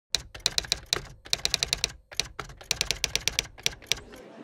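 Manual typewriter typing: three quick runs of sharp key strikes, separated by brief pauses.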